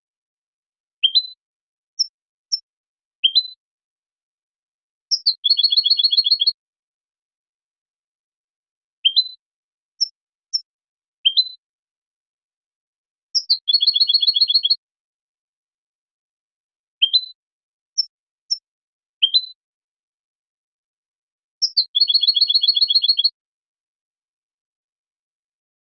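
European goldfinch song: the same phrase three times, about eight seconds apart, each a few short rising notes and two high chips followed by a rapid trill about a second and a half long, with dead silence between the phrases. It is a looped song recording of the kind played to young goldfinches to teach them to sing.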